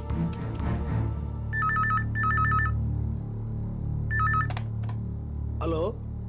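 Electronic telephone ring in short trilling bursts, a double ring about one and a half seconds in and another burst about four seconds in, heard while a landline handset is held to the ear: the call is ringing at the other end. A low steady music drone runs underneath.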